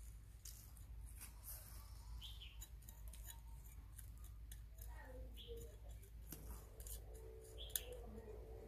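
Small hand tool scratching and poking into loose soil in a ceramic planter: a run of short, faint scrapes and clicks, with one sharper click near the end.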